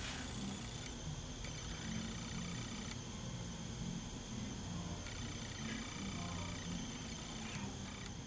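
Faint, steady background hum and hiss of room tone, with no distinct event.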